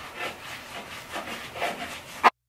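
Paint being applied to a wall in quick, rubbing back-and-forth strokes, about two strokes a second.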